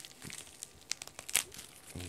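Plastic mailer bag crinkling as it is torn open with the teeth, a run of sharp crackles with the loudest about one and a half seconds in.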